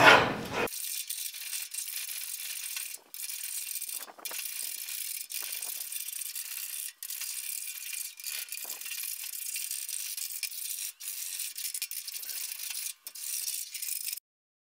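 Hand block plane shaving the surface of a glued-up wood tabletop, levelling the boards and glue seams: a rapid, thin, high scraping that runs on with a few short breaks.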